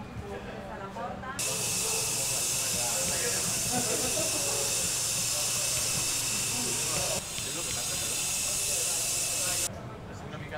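A loud, steady hiss that starts suddenly about a second and a half in, drops a little in level about seven seconds in, and cuts off just before the end, over faint voices and street sound.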